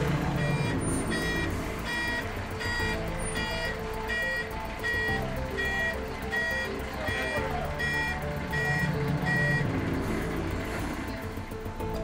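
Fire engine's reversing alarm beeping in an even rhythm, about one high beep every 0.7 seconds, over its engine running; the beeping stops near the end as the truck finishes backing up.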